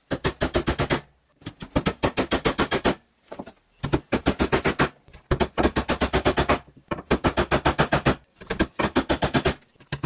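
Claw hammer tapping small nails into a wooden frame through nylon mesh, in quick runs of about eight light blows a second. Each run lasts about a second, with short pauses between them.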